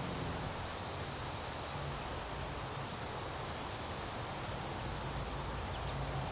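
Insect chorus: a high, thin buzzing that swells and eases off every couple of seconds.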